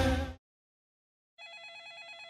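Music and a voice cut off in the first half-second; after a short silence, a telephone starts ringing with a fast electronic trill about one and a half seconds in.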